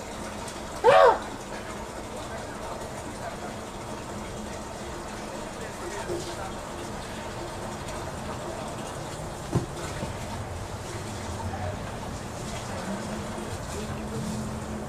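A man's short, loud vocal exclamation about a second in, over steady background noise, with a single sharp knock later on.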